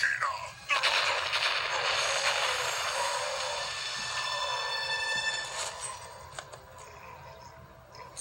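Explosion sound effect from a television show, played through the TV's speaker: a sudden blast about a second in that fades slowly over several seconds, with music under it.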